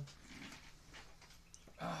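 A man's drawn-out hesitation sounds, 'uh' trailing off at the start and 'ah, uh' near the end, with quiet room tone in between.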